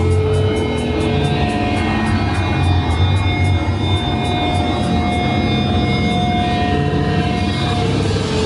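A hardcore punk band playing loud and live in a small studio room, heard from inside the crowd: a droning wall of distorted guitar and bass with held ringing tones. Quick, even cymbal strikes run through the first five seconds or so.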